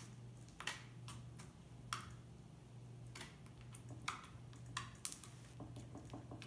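Clear slime made with contact lens solution being stretched and pressed in the fingers, giving scattered small, sharp sticky clicks and pops, about a dozen at uneven intervals, over a faint steady hum.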